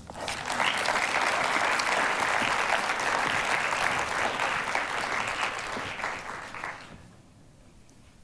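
Audience applauding, starting just after the start and dying away about seven seconds in.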